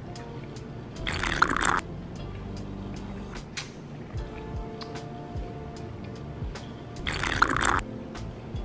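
A person taking two noisy sips of a drink from a cocktail glass, about a second in and again near the end, over background music.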